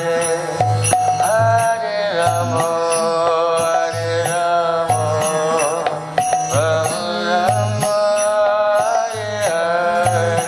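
Kirtan: a man's voice chanting a devotional melody in long held and bending notes over a steady rhythmic accompaniment with a low beat about once a second.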